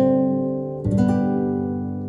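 Acoustic guitar music played back through an Onkyo 933 mini hi-fi system and its D302E bookshelf speakers. A chord rings out at the start and a second one is struck just under a second later, each fading slowly.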